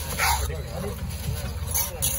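Busy fish-market background of voices and murmur, with a short scrape of a cleaver across a wooden chopping block about a quarter-second in.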